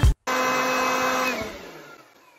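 Handheld electric blower motor running with a steady whine, then winding down about a second and a half in, its pitch dropping as it fades out.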